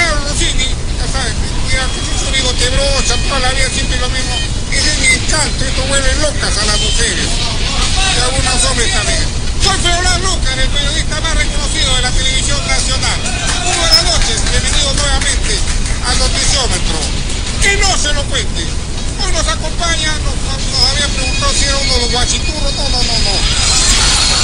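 A man talking, his voice over a steady low rumble.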